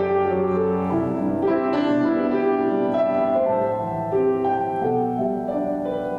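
Grand piano played solo: held chords with a melody of single notes moving over them.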